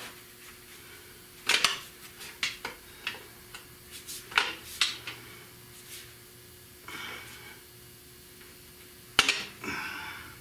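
Steel pry bar clanking against the flywheel of a seized Buick 455 V8 as it is levered to rock the frozen crankshaft. A string of about ten sharp metal clanks starts a second and a half in, and the loudest comes near the end.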